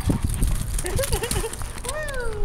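Wind rumbling and buffeting on the microphone, with a few short, high-pitched vocal sounds about halfway through.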